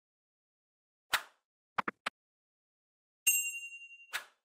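End-card sound effects: a short sharp hit about a second in, three quick clicks just after, then a bright bell-like ding near the end that rings on and fades.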